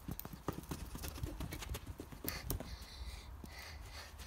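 Footsteps of a child jogging on the spot on grass: a quick, even run of soft thuds.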